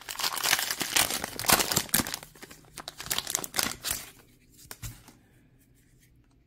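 Trading card pack wrapper being torn open and crinkled by hand, a dense run of crackling and tearing for about four seconds that then fades to a few faint rustles.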